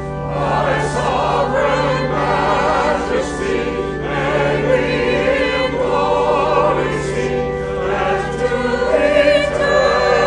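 Church congregation singing a hymn together, many voices at once over a steady low held accompanying note.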